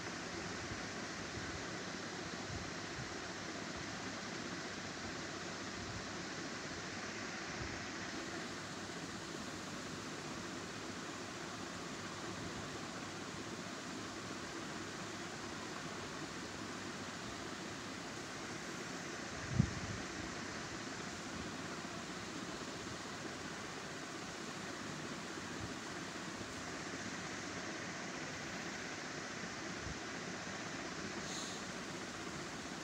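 Steady background hiss with no speech, and one short low thump about two-thirds of the way through.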